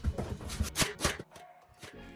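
Cordless brad nailer firing into a pine stair nosing: a quick run of about five sharp snaps within the first second, then quieter.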